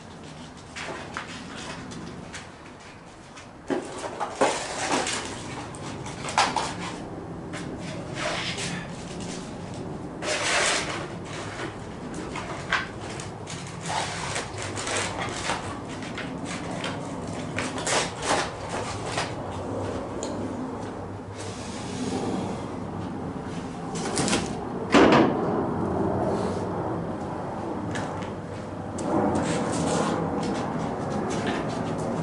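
Irregular clunks, knocks and scrapes of tools and objects being handled, set down and moved about in a garage workshop, with no power tool running.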